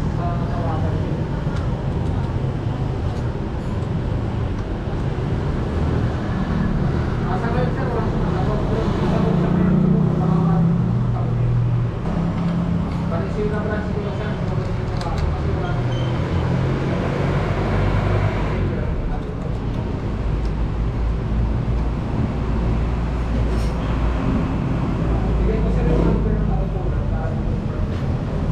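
Indistinct voices over a steady low rumble of road traffic.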